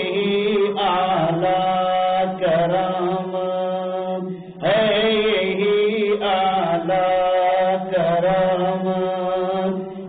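A voice chanting a devotional Urdu poem (kalam) in long held phrases with wavering ornaments on the notes. There is a brief break about four and a half seconds in, before the next phrase starts.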